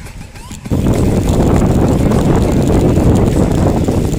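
Wind buffeting the microphone of a bicycle-mounted camera on a fast ride. After a quieter first moment it starts abruptly, loud and steady, and holds.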